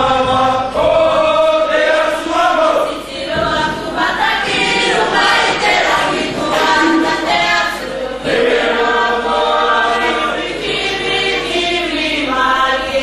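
A youth group singing a Cook Islands song together as a choir, phrase after phrase with short breaks between them.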